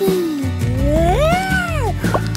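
A cartoon character's wordless voice: one drawn-out, meow-like vocalisation that dips, rises to a high point and falls away again, over background music.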